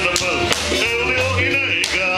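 Live band music from a luau stage show: a singer over bass and guitar, with sharp percussion hits cutting through, the loudest one near the end.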